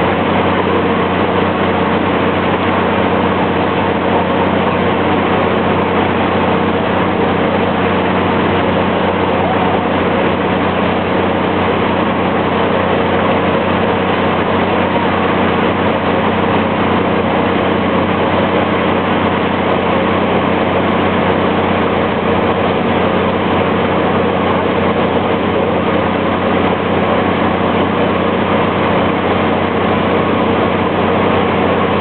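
An engine or motor running at a steady speed, a constant hum with no change in pitch or level.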